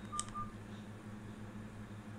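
A few short, faint electronic beeps in the first half second, like phone keypad tones, then only a steady low hum.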